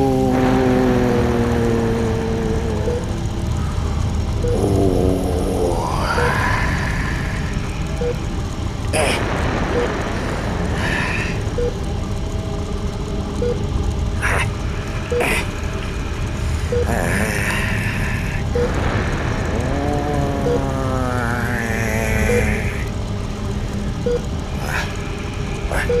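Drawn-out, wavering vocal groans that slide upward in pitch, three times, over a steady low rumbling hum, with a soft short pip about every two seconds in the second half and a few sharp clicks.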